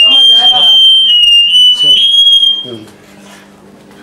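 A loud, high-pitched steady tone that wavers slightly in pitch, sounding over speech and cutting off about three seconds in.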